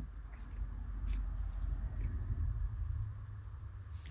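Handling of a box of lip liner pencils on a desk: faint scattered clicks and rustles over a low rumble of the desk or microphone being knocked.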